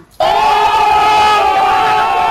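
A crowd of young men yelling together in one long, loud held shout, cutting in suddenly a fraction of a second in.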